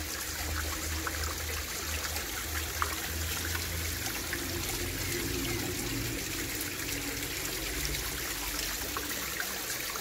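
Chalice Well spring water steadily trickling and splashing down red iron-stained stone steps into a shallow basin, with small drips and splashes ticking through it.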